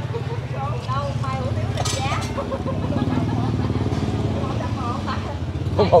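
An engine idling steadily, a low pulsing hum, with faint voices over it and a laugh near the end.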